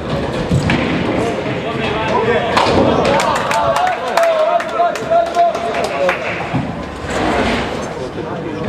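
Nine-pin bowling: heavy balls thudding onto the lane, then a run of sharp clattering knocks of pins and returning balls, over indistinct chatter of voices.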